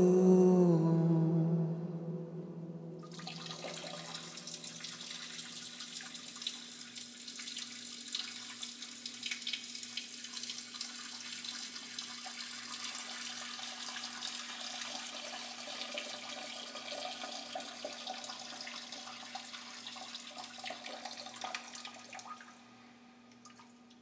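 A held sung 'Oh' fades out in the first two seconds. Then running, trickling water with small splashes and a steady low hum underneath; the water stops about 22 seconds in.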